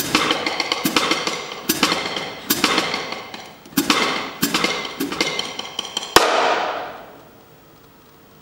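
Jazz drum kit played freely with sticks: scattered, irregular drum and cymbal accents over a ringing cymbal wash. About six seconds in comes one last loud cymbal crash that rings out and dies away within about a second, closing the piece.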